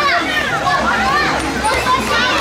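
Children playing and calling out, several high voices overlapping.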